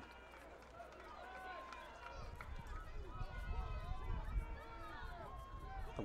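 Faint murmur of many distant voices talking at once, a stadium crowd at a football game. A low rumble comes up about two seconds in.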